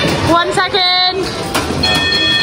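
Amusement-arcade din of game machines. A high voice calls out briefly about half a second in, and a steady electronic beep from a game machine starts near the end.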